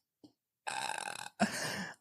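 A person's throaty, breathy vocal sound in two short bursts, the first about half a second in and the second just before the end.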